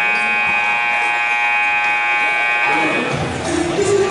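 Gymnasium scoreboard buzzer sounding one long, steady blast of nearly three seconds, signalling the end of a timeout or break as the players return to the court.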